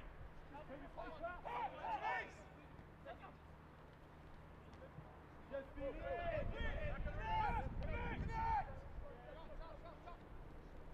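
Men's voices shouting on the pitch in two spells, about a second in and again from about five and a half to nine seconds in, over a low rumble.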